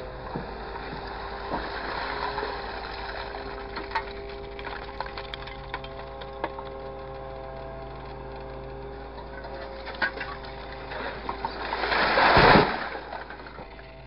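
Grapple loader running with a steady hydraulic whine and scattered clicks and knocks as the grab lifts and swings a load of scrap. Near the end there is a louder burst of rattling noise as the load is handled over the container.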